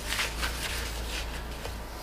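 A cloth wiping across the plastic top of a car battery: a few quick rubbing strokes in the first second, then fading away.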